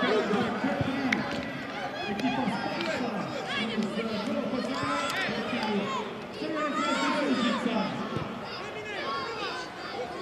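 Young footballers and coaches shouting and calling to each other across the pitch, many of the voices high-pitched, over a low chatter of spectators.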